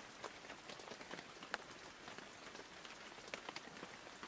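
Faint rain falling on a surface: a steady hiss with scattered, irregular drop ticks.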